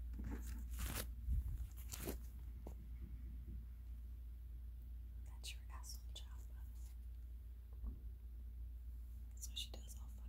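Faint, muffled talking coming through the floor over a steady low hum. Sharp clicks and rustles come about one and two seconds in and again near the end.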